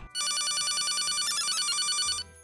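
Corded desk telephone ringing: one electronic warbling ring, about two seconds long.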